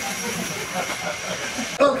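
Steady hissing background noise with a thin, high steady tone in it, under faint distant voices; a man starts talking close by just before the end.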